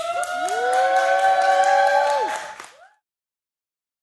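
Several voices holding one long cheering shout together, pitches sliding up at the start and falling away about two and a half seconds in, with a few hand claps.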